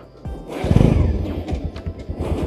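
Motorcycle engine dropping back briefly, then picking up again about half a second in, with music playing over it.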